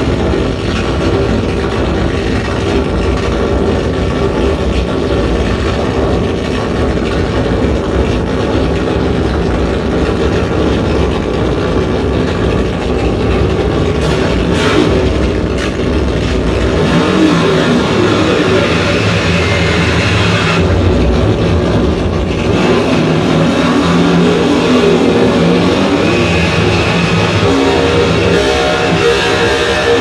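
Harsh noise electronics: a loud, continuous wall of distorted electronic noise with a deep rumble, shaped by hand on small effects units, its texture shifting several times in the second half.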